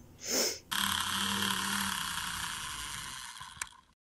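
A short puff of breathy noise, then a steady hiss lasting about three seconds that slowly fades, with a single click near the end.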